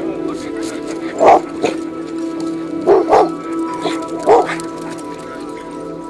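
Dogs barking: about six short, sharp barks, several in quick pairs, over steady background music.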